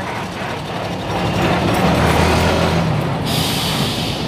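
Heavy flatbed truck driving past at close range: engine rumble and tyre noise that swell to their loudest about two seconds in, then ease as it pulls away.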